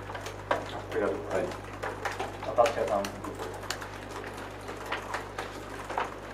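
Irregular clicking of reporters typing on laptop keyboards in a small press room, with a few faint off-mic voices about a second and two and a half seconds in.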